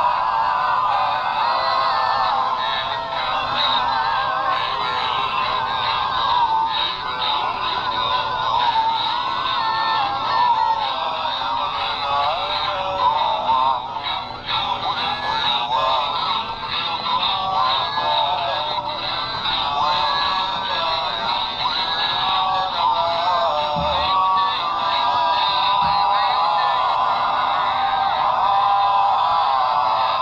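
Animatronic Christmas plush puppy singing a song through its small built-in speaker, a thin electronic voice and backing with almost no bass.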